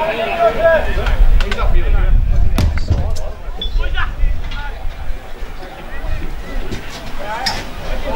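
Indistinct calls and chatter from people around the football ground, with a low rumble on the microphone for a few seconds in the first half and a few sharp knocks.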